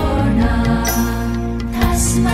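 Chanted Buddhist sutra over dance accompaniment music: one voice holds a low chanted note through the middle, with a few sharp strikes at the start and near the end.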